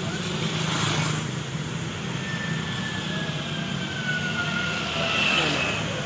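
Road traffic of motorbikes and scooters, their small engines running as they pass close by. A faint whine falls slowly in pitch through the middle.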